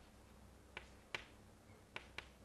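Chalk tapping against a chalkboard as it writes: three short sharp clicks, the loudest a little past the middle, over a faint low hum.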